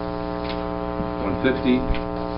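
Steady electrical hum with many evenly spaced overtones, typical of mains hum picked up in an audio feed. A few muffled words cut through it about two-thirds of the way through.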